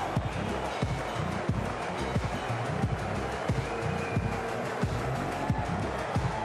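Opening theme music with a heavy, regular drum beat.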